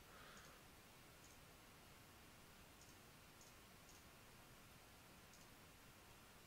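Near silence, broken by about six faint, scattered computer-mouse clicks.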